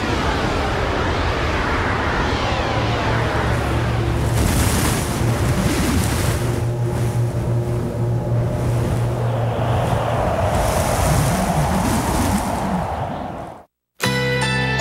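Loud rushing wind-like storm noise over a low, steady drone, with sweeping whooshes in the first few seconds; it fades out to silence just before the end.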